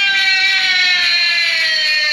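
Devotional kirtan singing: a voice holds one long high note that slowly falls in pitch, over the chanting music.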